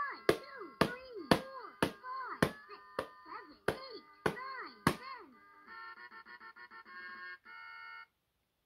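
LeapFrog Learning Drum toy tapped about twice a second over its electronic melody. Each tap gives a sharp click and a synthesized drum tone that bends down in pitch. The tapping stops after about five seconds, and the toy plays a fast, stuttering electronic jingle that cuts off suddenly near the end.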